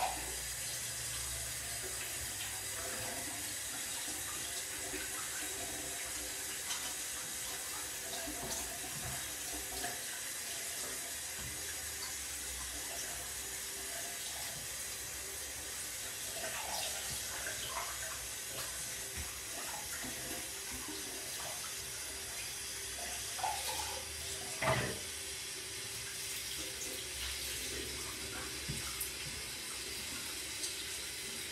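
Water running steadily, with a few light clinks and knocks over it, the loudest one about 25 seconds in.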